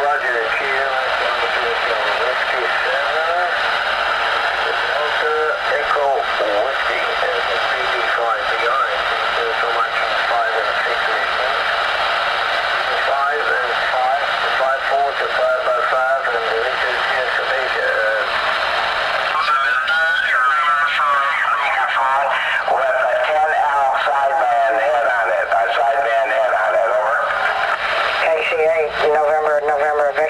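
Ham operators' voices received on a Ranger RCI-69FFC4 ten-meter radio, coming through its speaker thin and narrow, over steady static hiss. A stronger, clearer voice comes in about two-thirds of the way through.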